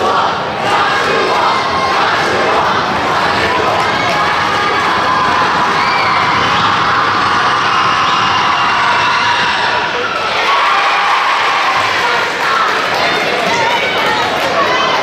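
Basketball crowd in a school gym cheering and shouting, many voices at once, dipping briefly about ten seconds in and then rising again.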